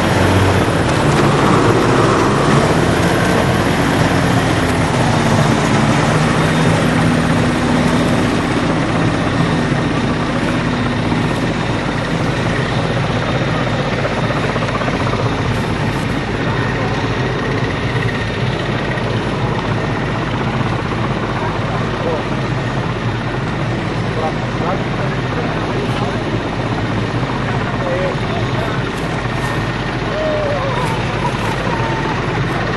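Piston engine and propeller of a vintage biplane running as the plane taxis off. The steady engine noise slowly fades as it moves away.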